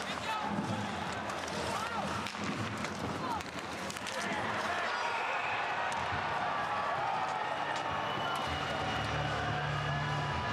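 Ice hockey arena sound with a voice over it: skate, stick and puck knocks under crowd noise. The crowd swells about four seconds in as the overtime winning goal goes in, and music comes in near the end.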